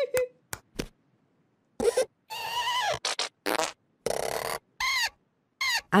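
A few quick clicks, then a string of about six short, squeaky, raspy comic sound effects with wobbling, sliding pitch, cartoon noises for the drawn dogs.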